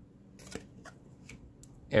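Trading cards being handled in the hand, one slid off the front of the stack: a few light, sharp card clicks and snaps spread over the second half.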